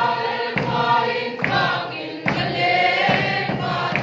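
A congregation of mostly women's voices singing a worship song together, with a sharp beat about once a second keeping time.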